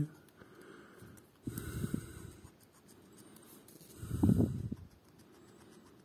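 A coin scraping the scratch-off coating of a paper scratch-card ticket, in two short bursts of quick strokes, about a second and a half in and again around four seconds.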